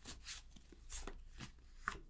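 Tarot cards being shuffled by hand: a few faint, short brushing taps as the cards slide and tap together.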